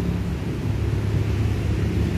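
A steady low engine rumble with a constant hum.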